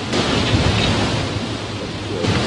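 Steady, loud rushing noise with a low rumble and a faint hum underneath: wind buffeting an outdoor microphone.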